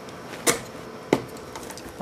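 Two short, sharp clicks a little over half a second apart as the power-supply connectors are unplugged inside a broadcast video mixer.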